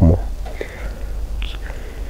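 A pause in a man's speech: his last word trails off at the very start, then only faint breathy mouth sounds over a steady low hum.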